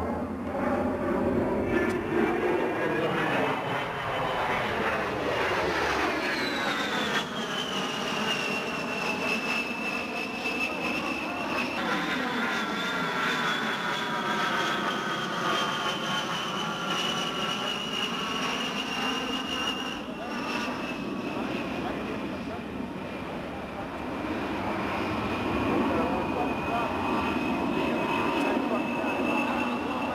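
A Fairchild Republic A-10 Thunderbolt II's twin General Electric TF34 turbofans whining in flight over a rushing jet noise. The high whine slides down in pitch as the jet passes, jumps higher about twelve seconds in, then falls slowly again.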